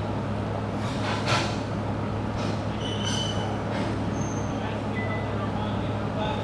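Steady low hum with an even hiss of background noise inside the car, ignition on and engine not running, with a few faint, brief high tones.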